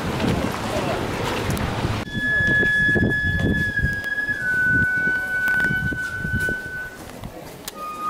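Outdoor crowd noise with voices. About two seconds in it cuts abruptly to Shinto gagaku music, in which a flute-like wind instrument holds long single notes and steps down in pitch twice over a low murmur.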